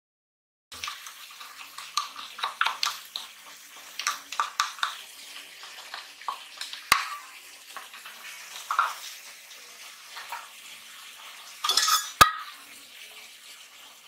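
Kitchen handling noise from an aluminium cooking pot and a plastic cup: irregular light knocks, clicks and scrapes as spice powder is tipped in and the pot is shifted. It starts a moment in, with a sharp knock about halfway through and a louder clatter near the end.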